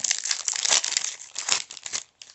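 Foil wrapper of a Panini Mosaic soccer trading-card pack crinkling as it is handled and opened, stopping abruptly at the end.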